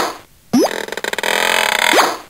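Electronic sound effect from a Playskool Busy Ball Popper toy's sound chip. After a brief silent gap comes a quick rising whistle, then over a second of dense, noisy, jangling electronic clatter with ringing tones, and then another rising whistle near the end.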